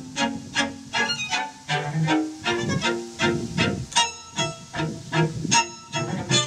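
String quartet playing: violins, viola and cello in short, separate notes at a steady pulse, a few notes a second.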